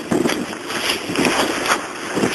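Wind buffeting the camera's microphone during a snowstorm, a rushing noise broken by irregular scuffs and rustles as the camera is carried along.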